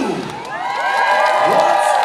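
A crowd of parade spectators, many of them children, cheering and shouting. After a brief lull at the start, many overlapping voices rise and hold in whoops from about half a second in.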